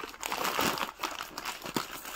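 Clear plastic garment polybags crinkling as they are lifted and shuffled by hand, an irregular run of crackles and small clicks.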